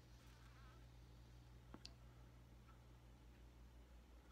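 Near silence: a low steady hum, with one faint click a little under two seconds in.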